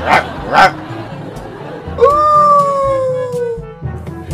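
A man imitating a dog with his voice: two quick barks, then about two seconds in one long howl that slides slowly downward.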